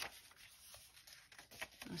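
Faint rustling and a few soft ticks of thick paper pages being handled and turned in a handmade junk journal.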